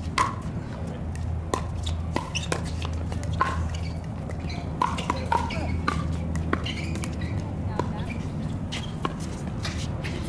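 Pickleball paddles hitting plastic balls on nearby courts: irregular sharp pops at uneven spacing, sometimes several close together, over a steady low hum.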